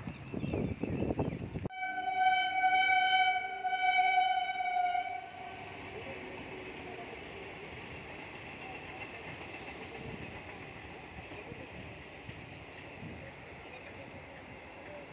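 Train horn sounding one long blast of about four seconds that swells twice. It starts suddenly near two seconds in. After it comes the steady running noise of a passenger train going past the level crossing.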